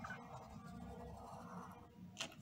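A marker pen rubbing faintly on a paper worksheet as it traces round a zero, fading out just before the end.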